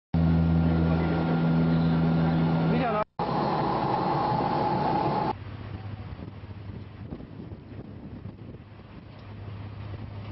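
Ship's engine running with a steady low hum, mixed with wind and sea noise on a deck microphone in strong wind. The sound cuts out briefly about three seconds in and drops to a quieter hum and wind after about five seconds.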